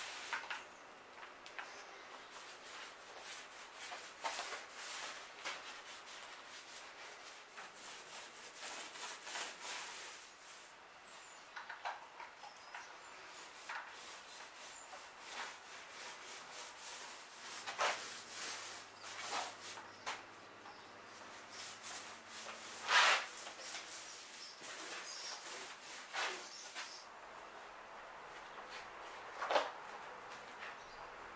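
Glue being spread by hand along the wooden staves of a laminated mast: irregular scraping and rubbing on the timber with occasional sharper clicks, the loudest scrape about two-thirds of the way through.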